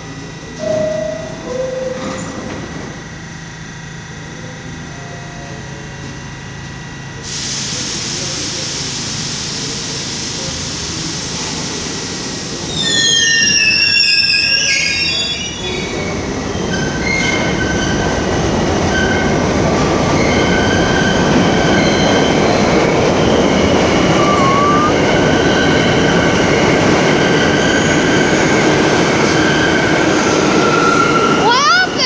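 New York City subway train at a platform: two short tones about a second in, a hiss of air starting about seven seconds in, then loud metallic wheel squeal around the middle. The train then runs past with a loud, steady rumble and a whine of several steady tones.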